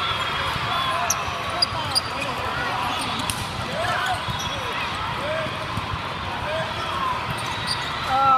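Indoor volleyball play in a large hall: a steady din of voices with many short pitched shouts and calls, and three sharp slaps of the ball in the first two seconds.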